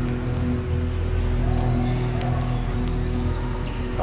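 Background music with steady low held tones, over the court sound of a basketball game on a hardwood gym floor: scattered ball bounces and short sharp taps.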